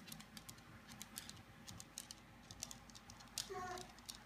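Faint, irregular light clicks and ticks as a Wonder Workshop Dash toy robot carrying a clipped-on marker runs its program and turns on a sheet of paper. A brief voice-like sound comes near the end.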